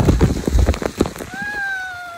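Water pouring down from overhead and splashing hard onto people and the camera for about the first second. Then a woman's long, high cry that slides slightly down in pitch.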